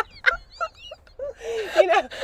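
Women laughing, the laughter dying down to a brief lull and then picking up again as a breathy laugh about a second in, leading into speech.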